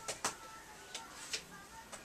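A few light clicks and taps of a small scoop against the ink bottle and wooden silkscreen frame as water-based white ink is put onto the screen.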